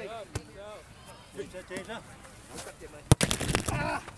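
A volleyball struck by hand: a faint slap shortly after the start and a loud, sharp slap about three seconds in, with players' voices faint in the background.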